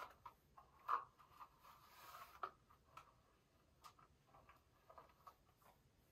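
Faint, irregular swishes and rustles of a hairbrush being drawn through long hair, a few soft strokes over very low room tone.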